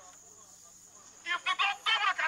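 A man's voice through a handheld megaphone, harsh and tinny, starting again about a second and a quarter in after a short pause, in short choppy bursts.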